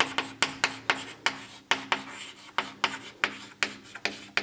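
Chalk writing on a blackboard: a quick run of short, sharp chalk strokes and taps, about four a second, as letters are written, over a faint steady hum.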